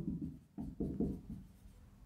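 Dry-erase marker writing on a whiteboard: a run of short rubbing strokes as letters are drawn.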